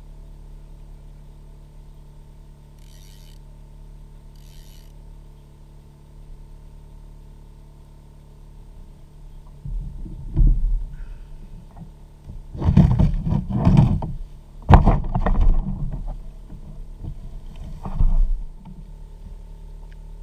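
Handling noise on a plastic fishing kayak: irregular bumps, knocks and rattles against the hull, coming in loud clusters in the second half, over a steady low hum.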